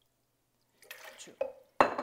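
A glass measuring cup set down on the kitchen counter with a sharp clink near the end, after a little faint handling noise.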